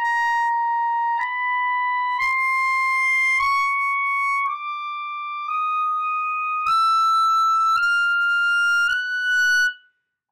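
Selmer Présence B-flat clarinet in grenadilla wood playing a slow chromatic climb in its high (altissimo) register: nine held notes of about a second each, rising by half steps. It is a tuning check of the upper range, and every note sits a hair sharp by the same amount.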